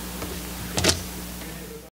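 Steady low electrical hum of the room's audio, with one short scuffing noise, two quick peaks just under a second in. The sound then cuts off abruptly just before the end.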